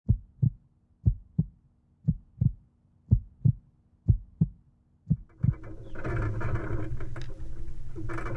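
Heartbeat sound effect: six double thumps, lub-dub, about one a second. A steady rushing noise then comes in and grows about six seconds in.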